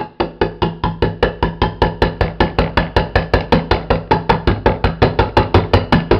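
A knife stabbing rapidly and evenly into the lid of a full steel food can standing on a wooden desk, about six sharp strikes a second with a dull thud under each, hammering the blade in to puncture the can.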